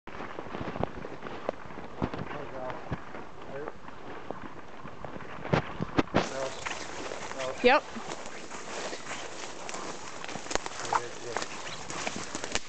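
Footsteps pushing through dense forest undergrowth: leaves and brush rustling, with frequent twigs snapping underfoot and a few louder snaps.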